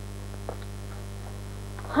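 Steady low mains hum on an old film soundtrack, with a faint click about half a second in.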